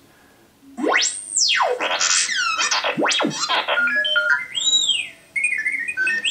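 R2-D2 droid sound effects played from a phone through a small JBL portable speaker. They start about a second in: electronic whistles sweeping up and down, then chirps and warbling beeps.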